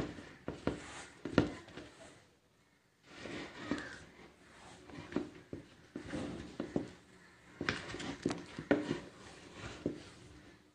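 Handling noises from an artificial flower tree and its plastic pot: rustling of the plastic blossoms and a run of sharp clicks and light knocks as it is moved and worked on, with a short pause about two and a half seconds in.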